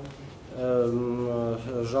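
A man's drawn-out hesitation sound, a long "eee" held on one steady pitch for about a second, between words of a lecture. Ordinary speech resumes near the end.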